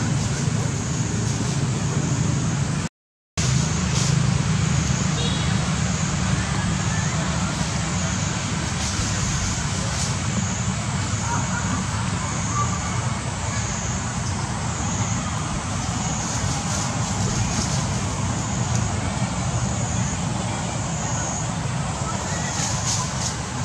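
Steady outdoor background noise, a continuous low rumble with hiss, with no clear animal calls standing out. It cuts to silence briefly about three seconds in.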